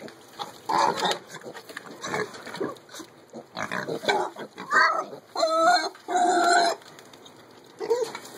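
Baby mini pigs grunting and squealing in about half a dozen short calls, the two loudest and longest near the end.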